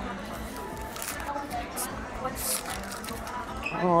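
Restaurant dining-room background of other diners' chatter and faint music. A few short crackles of a paper chopstick sleeve being pulled off come about two seconds in, and a man says 'Oh' at the very end.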